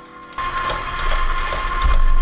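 KitchenAid stand mixer with the ice cream maker bowl attachment, switched on about half a second in and running at its lowest speed to churn gelato base: a sudden start, then a steady motor hum with a constant high tone.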